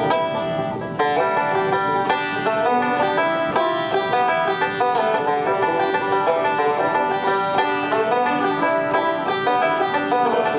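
Five-string banjo picked bluegrass-style: a quick, unbroken run of plucked notes, a lick built on pinches and a slide.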